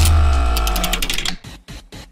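Short musical transition stinger: a deep bass hit under a held chord that fades out about a second and a half in, with a quick run of ticks as it dies away.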